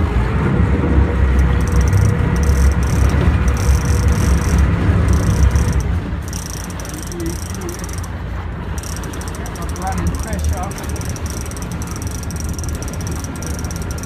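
Sport-fishing boat's engine running under way, a low rumble with a steady hum, with wind on the microphone. About six seconds in the hum stops and the sound drops as the engine eases off.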